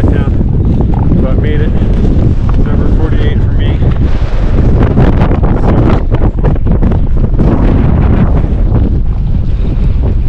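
Strong summit wind blasting across the microphone: a loud, steady rumble with no let-up, and faint snatches of voices under it.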